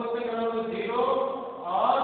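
A voice reciting in a drawn-out, chant-like sing-song, holding its syllables long.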